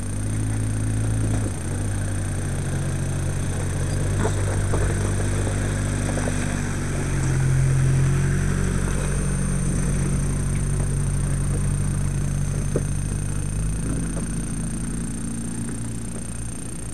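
Mitsubishi Pajero engine running at low revs as the 4x4 crawls over a rocky track close by. It gets louder about halfway through as the vehicle passes, with a few sharp clicks along the way.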